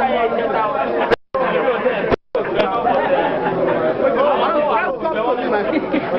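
Chatter of many people talking at once in a large room, overlapping voices with no single speaker standing out. The recording drops out to silence twice, briefly: a little after one second in and again a little after two seconds in.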